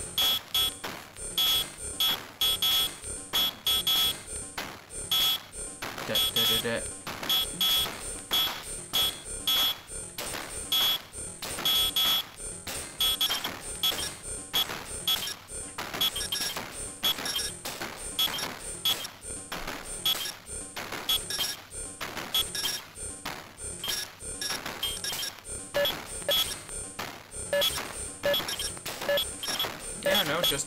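Moffenzeef GMO Eurorack module making glitchy telephone and dial-up computer noises, chopped into fast, irregular stuttering bursts with high buzzy tones, as Maths modulation mauls it into semi-rhythmic chaos.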